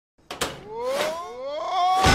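A couple of sharp knocks, then a man's loud, drawn-out yell rising in pitch in two surges.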